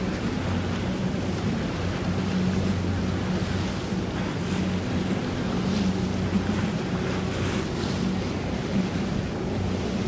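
Boat outboard engine running steadily at cruising speed, a low even drone, over the rush and slosh of water and wind buffeting the microphone.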